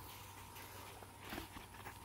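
Faint shuffling of feet on bare dirt, with one soft thud a little past halfway.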